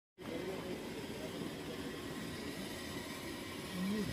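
Steady background hubbub of an indoor market, with faint distant voices in the murmur.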